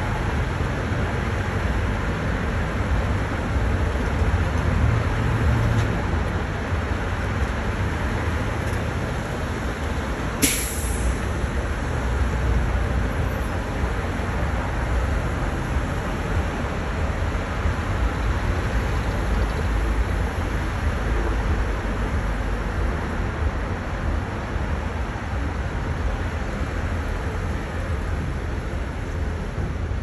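Street traffic: a steady rumble of cars and trucks moving along a multi-lane boulevard. About ten seconds in there is one brief, sharp hiss.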